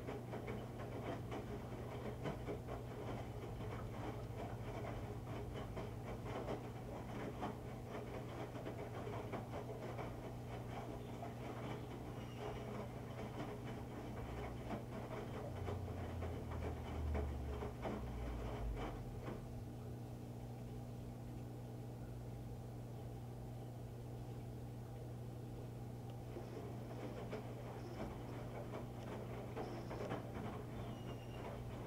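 Electrolux EFLS517SIW front-load washer in its wash cycle: the drum tumbles wet laundry with irregular sloshing and splashing over a steady motor hum. About two-thirds of the way through the sloshing goes quieter for several seconds, then picks up again near the end.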